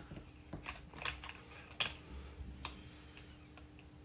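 Metal scissors clicking and tapping lightly against the metal contacts of a toy conductivity tester: a handful of faint, irregular clicks, the sharpest a little under two seconds in.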